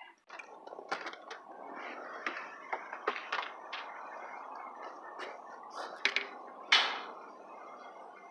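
Scattered knocks and rustling over a steady background noise, with one louder knock near the end.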